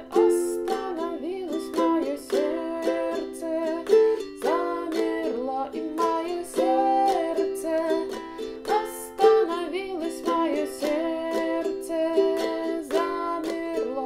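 Ukulele strummed at a calm, unhurried tempo through the chorus chords C, F, C, then C, G, A minor, in a down-down-up-up-down-up pattern. A woman's voice sings the melody along with it.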